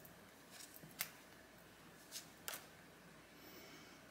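Near silence broken by a few faint, short clicks of tarot cards being handled, the clearest about a second in.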